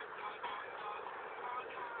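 Steady low noise inside a car being driven, with faint, indistinct voices.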